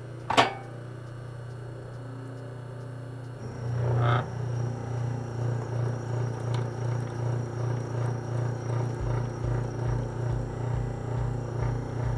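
Bonis fur sewing machine starting up about four seconds in and running with an even pulsing beat about twice a second, over a steady motor hum. A sharp click comes just before, near the start.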